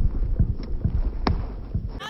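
Wind buffeting the microphone as a steady low rumble, with two short sharp knocks, a faint one about half a second in and a louder one just over a second in.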